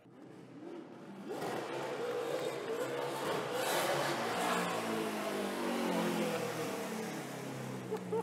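Chevrolet Camaro ZL1 NASCAR Cup race car's V8 engine running as the car drives along the street. It grows louder over the first couple of seconds, and its pitch rises and falls with the throttle.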